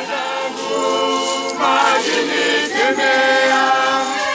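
A choir of voices singing together in several parts, unaccompanied, with long held notes.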